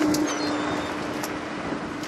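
Steady running noise of a small fishing boat's engine and the sea during pot hauling, with a low hum that fades out shortly after the start and a couple of faint knocks.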